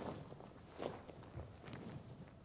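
Faint, soft footfalls and shuffles of bare feet on a stage floor as performers step through a stick form, a few thuds about a second apart.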